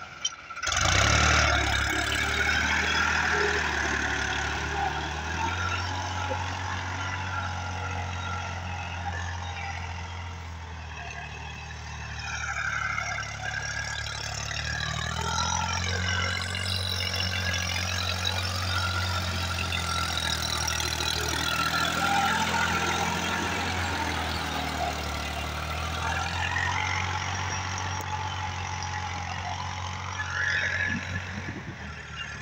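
Case IH JX50T tractor's diesel engine running steadily under load while pulling a rotary tiller through the soil.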